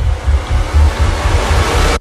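Trailer sound design: a rushing swell of noise that grows brighter and louder over a deep, throbbing bass, then cuts off abruptly.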